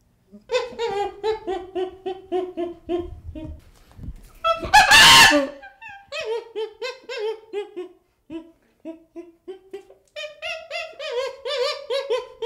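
A chimpanzee calling: runs of quick hooting calls, about four a second, each note falling slightly in pitch. About five seconds in, one loud scream is the loudest moment.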